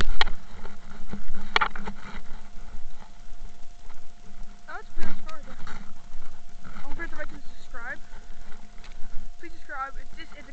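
Two sharp clicks within the first two seconds, then indistinct voice sounds, broken and rising and falling in pitch, from about halfway on.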